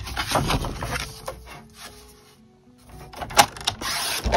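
A sheet of cardstock being slid and handled on a plastic scoring board, rustling and scraping, with a sharp tap about three and a half seconds in. Soft background music with held notes runs underneath and is heard most clearly in a quieter stretch just after the middle.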